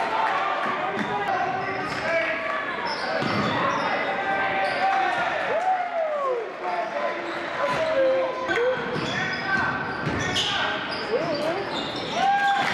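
Basketball game sound on a hardwood gym floor: the ball bouncing and sneakers squeaking in short glides, with voices calling out across the hall.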